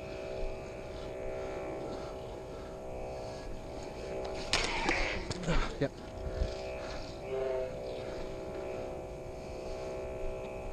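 Steady electronic hum of sound-board combat lightsabers, a buzzing drone of several steady tones, with a louder burst of saber swing and clash effects about four and a half seconds in.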